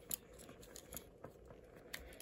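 Faint clicks and scrapes of fingers working the scale tools in and out of a Victorinox Cybertool pocket knife's plastic scales, with a sharper click near the start.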